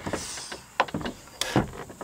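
High-pressure hand pump being stroked to charge a PCP air rifle up to 1500 PSI. There is a short hiss of air near the start, then a few knocks from the pump's strokes.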